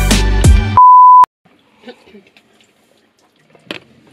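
Background music with a beat cuts off, and a loud steady high bleep tone sounds for about half a second. It is followed by a faint hush with a small click near the end.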